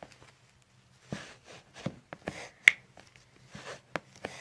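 Toe joints popping as they are pulled and manipulated by hand: several small pops, with one sharp, much louder crack about two-thirds of the way through.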